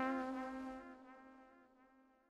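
Closing held brass note of a song, one steady pitch fading out to silence about a second and a half in.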